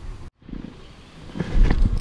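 The sound cuts out completely for a moment early on, then a loud low rumble with a few sharp knocks builds up in the second half.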